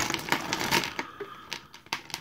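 Small hard-plastic action-figure weapons and accessories clattering out of a plastic zip-top bag onto a cutting mat, with the bag crinkling. A rush of clicks in the first second thins to a few scattered clicks.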